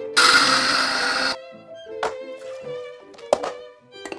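Electric coffee grinder running for about a second as it grinds whole coffee beans. Two short knocks follow later.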